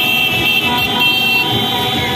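Several car horns honking at once in celebration, held tones over the noise of a crowded street full of traffic, strongest in the first second and a half.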